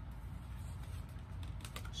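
Tarot cards being handled and drawn from the deck, giving a few light clicks near the end over a steady low hum.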